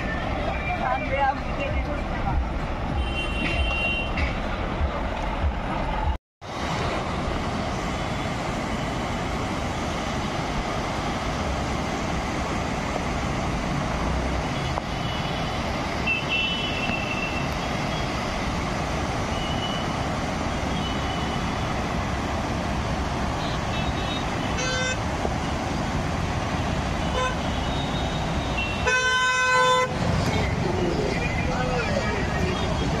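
Rally motorcycles and cars passing with steady engine and road noise, horns honking briefly a few times and one long, strong horn blast near the end. The sound cuts out for a moment about six seconds in.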